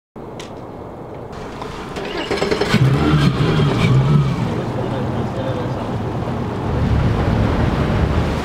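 Mercury outboard motors running, a steady low hum that grows louder about two seconds in, with wind and water noise around it.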